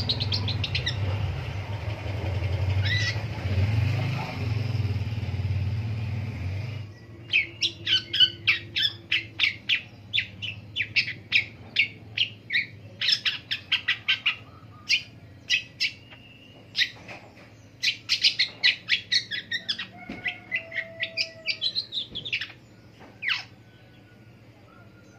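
Long-tailed shrike (pentet) singing: from about seven seconds in, rapid runs of short, sharp chirps in bursts with brief pauses, ending shortly before the end. Over the first seven seconds a low steady rumble carries only a few chirps, then stops abruptly.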